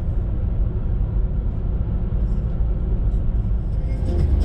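Steady low outdoor rumble of wind on the microphone and road traffic.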